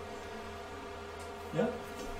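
Steady electrical buzz: a low hum with a ladder of fine overtones above it, unchanging in pitch and level.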